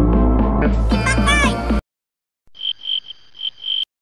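Background music with a steady beat that cuts off suddenly about two seconds in. After a short gap comes a cartoon-style sound effect: about five quick, high, croak-like chirps in a row, then silence.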